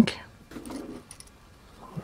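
Small screwdriver backing a tiny screw out of a plastic cooling-fan frame: faint small clicks and scraping in the first half, with a couple of tiny high ticks a little after a second in.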